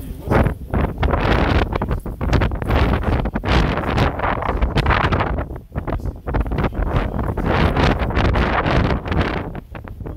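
Wind buffeting the microphones, a loud, gusting rumble that rises and falls unevenly and drowns out everything else.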